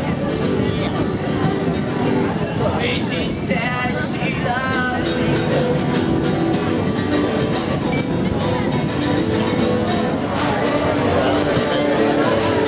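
Twelve-string acoustic guitar being strummed, with people's voices around it.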